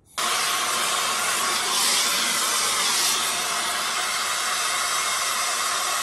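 Gas torch flame hissing steadily as it heats a seized long bolt in its sleeve at the bottom of an outboard's cylinder block.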